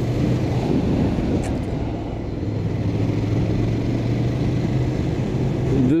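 Ducati Scrambler's 803 cc air-cooled L-twin engine running at a steady cruising speed, with a slight easing about two seconds in, under a constant rush of wind and road noise.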